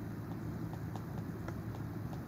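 Stylus tapping and scratching on an iPad's glass screen while handwriting: irregular light clicks, several a second. A steady low hum runs underneath.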